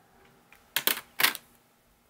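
Two short, sharp handling noises close to the microphone, about half a second apart, from something being moved or knocked on the desk.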